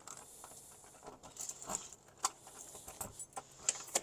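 Keys jangling on a ring and a key working in a front-door knob lock: a scatter of small metallic clicks and taps, the sharpest a little past halfway and just before the end.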